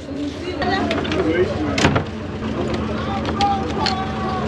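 Steady low drone of a passenger ferry's engine, with passengers' voices in the background and one sharp click about two seconds in.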